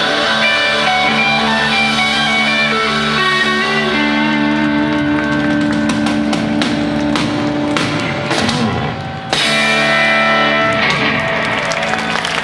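Live rock band playing: electric guitars and bass holding notes over a drum kit with cymbal strikes. The music breaks off suddenly for a moment about nine seconds in, then comes back in on held chords.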